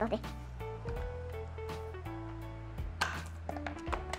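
Light instrumental background music with held notes over a steady bass line, with a few sharp clicks from the plastic pieces of a toy monkey-catapult game.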